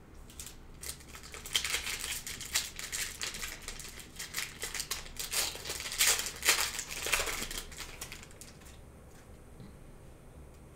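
Wrapper of a Panini Prizm retail trading-card pack crinkling and tearing as it is ripped open by hand: a run of crackly rustles, loudest about six seconds in, dying away near the end.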